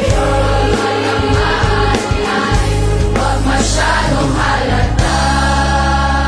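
A mass choir of over 400 voices singing over a backing track with a beat and bass. About five seconds in, the beat stops and a held chord carries on.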